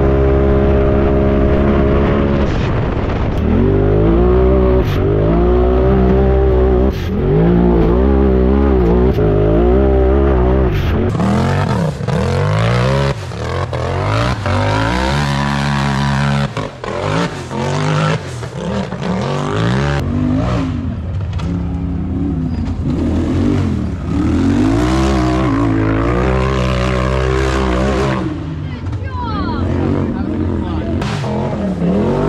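Side-by-side UTV engines revving hard, their pitch climbing and dropping again and again as the machines accelerate and shift. The first part is heard from inside the cab. After a cut, the rest is heard from the hillside as UTVs race up a dirt hill climb.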